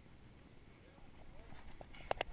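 Faint distant voices over low rumbling noise, with a couple of light clicks near the end.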